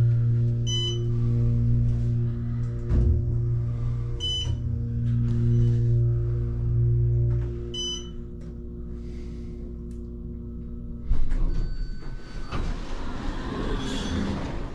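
Passenger elevator riding up: a steady drive hum with three short beeps about three and a half seconds apart as it passes floors. The hum stops about two-thirds through, a thump follows as the car settles at the floor, then a brief chime tone and the doors sliding open near the end.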